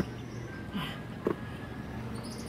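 A woman's short exhaled grunt with a falling pitch about a second in as she sinks into a squat, then a brief knock.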